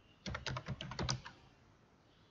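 Laptop keyboard being typed on: a quick run of about a dozen keystrokes lasting about a second, starting shortly after the beginning, then stopping.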